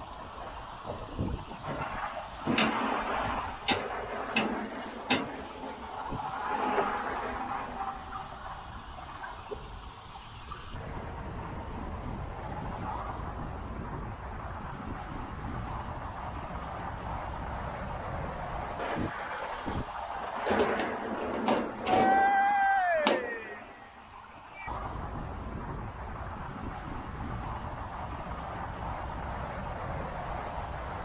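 Wind buffeting the microphone over the steady noise of motorway traffic. There are a few sharp knocks in the first five seconds, and a brief pitched sound that slides down in pitch a little after twenty seconds.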